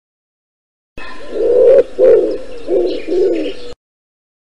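A pigeon cooing: a run of about four low coos that starts abruptly about a second in and cuts off suddenly near the end.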